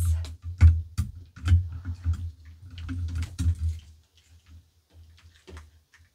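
Handling noise of a light's plug and cord being checked: a string of sharp clicks and knocks with low thuds under them, close together for the first four seconds, then a few faint ones.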